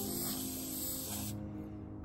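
Aerosol can of spray shellac hissing steadily, cutting off suddenly just over a second in, with soft background music underneath.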